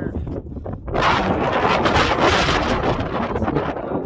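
Wind buffeting the microphone: a loud, rumbling gust builds about a second in, holds, and eases just before the end.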